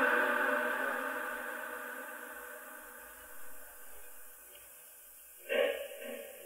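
Reverberant echo of a male reciter's chanted Quran recitation dying away slowly after a phrase ends. About five and a half seconds in, a short voiced sound begins abruptly.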